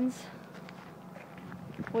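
Faint footsteps of people walking, over a steady low hum.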